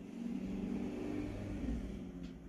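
A motor vehicle's engine running, its low drone swelling in just after the start and then holding steady.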